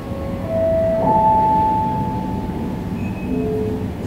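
An airport public-address chime: a few clear, steady electronic tones sounding one after another and overlapping, each held for a second or two, over the low noise of a large hall.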